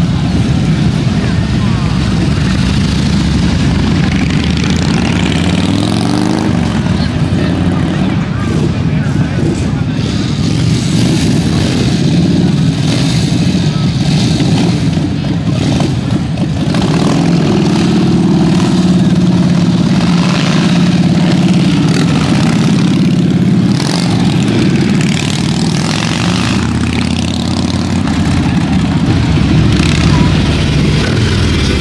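Several Harley-Davidson V-twin motorcycles running and riding off past, the engines rising in revs as they pull away, with voices mixed in.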